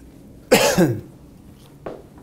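A man coughs once, a short, loud cough about half a second in.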